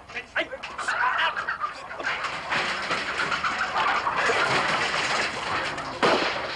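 Chickens squawking and clucking in a commotion that thickens into a dense, loud din about two seconds in.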